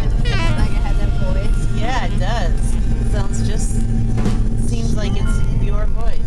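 A Christmas song playing on a car radio, a voice singing with wavering held notes, over the steady low rumble of the car driving.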